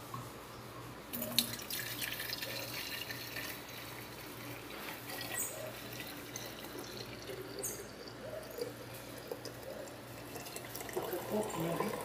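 Coffee trickling and splashing as it is made in an electric drip coffee maker and handled with a glass carafe and a thermos jug, with scattered light clicks and clinks.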